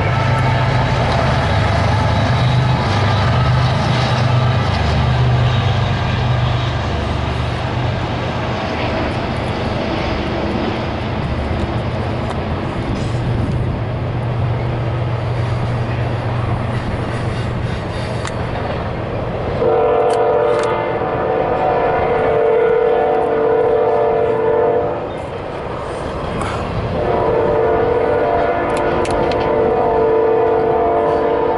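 Norfolk Southern double-stack intermodal train rolling past over a steel bridge, with the steady low rumble of its diesel locomotives in the first part. About 20 s in, the locomotive horn sounds a long chord for about five seconds, then a second long blast starts two seconds later.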